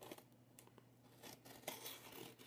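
Faint cutting and tearing sounds of a cardboard package being opened by hand, a few short strokes with the loudest near the end.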